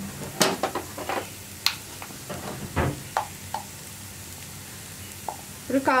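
Sliced onions, green chillies and curry leaves frying in oil in a non-stick pan: a steady low sizzle with scattered short, sharp clicks.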